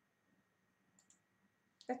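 Two faint computer mouse clicks about a second in, in otherwise near silence, as the display is switched from one screen to another; a woman's voice begins right at the end.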